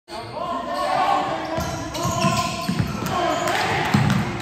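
A basketball being dribbled on a hardwood gym floor, with short bounces roughly twice a second starting about a second and a half in.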